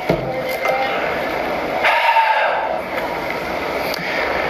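Steady hiss of a TV news broadcast played through a screen's speaker and re-recorded, with no clear words. A faint short tone comes in about two seconds in.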